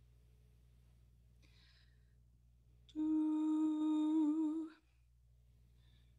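A single hummed note, held for under two seconds about three seconds in, wavering slightly at its end: the cantor giving the starting pitch of the hymn. Before and after it there is only a faint low hum.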